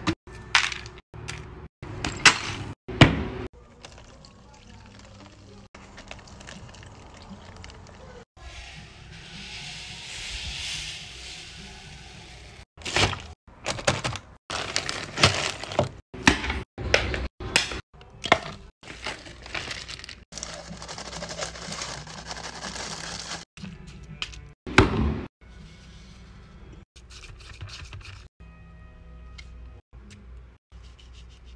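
A plastic soda bottle knocked down hard on a tile floor, making a series of sharp thunks and cracks. A drawn-out hiss comes about ten seconds in, all over background music.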